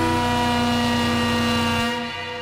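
Techno track in a drumless passage: a held synth drone chord over a low pulsing bass, which drops away near the end.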